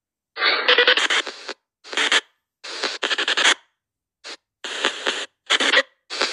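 Spirit box app on a phone sweeping through radio frequencies, putting out about six short, uneven bursts of radio static and garbled fragments, each cut off sharply into silence by the app's noise gate.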